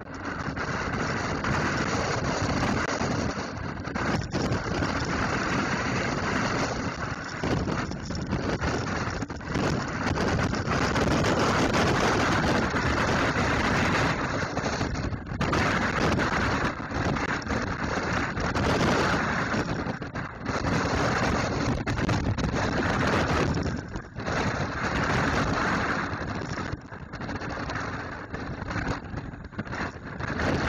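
Typhoon winds gusting at around 50 m/s, buffeting the microphone: a dense rushing noise that surges and eases every few seconds, with brief lulls between gusts.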